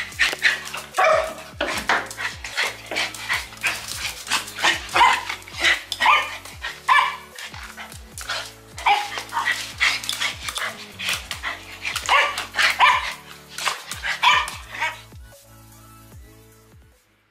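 Small dogs barking, many short barks in quick succession, over a steady background music track; the barking stops near the end.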